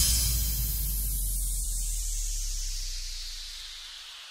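An electronic dance-music effect: a hissing noise sweep falling steadily in pitch over a held deep bass note, the whole sound fading away over about four seconds.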